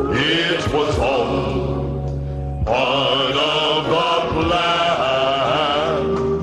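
A man singing a gospel song with vibrato into a microphone over instrumental accompaniment with a steady bass; one sung phrase ends about two seconds in and a louder one starts shortly after.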